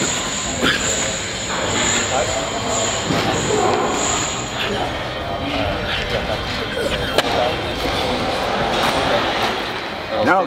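Indistinct voices over a steady, loud background noise, with a thin high whine through the first half and a couple of short knocks.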